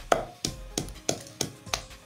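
Pestle pounding yellow peppers in a mortar: a steady beat of about three strikes a second, each a short knock with a brief ring.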